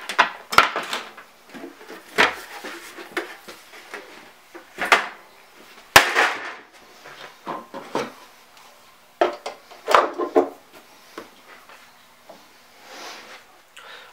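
A run of separate knocks, clicks and clatter from parts being handled on a Technics 1200 turntable, as the dust cover comes off and the platter and record go back on. The sharpest knock comes about six seconds in.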